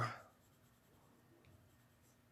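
Faint scratching of a pen tip on card stock as a small area is coloured in.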